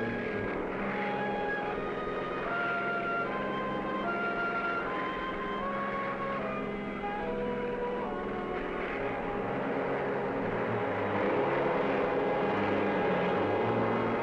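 Helicopter engine and rotor noise, steady and growing a little louder near the end, mixed with a music score playing a slow melody of held notes.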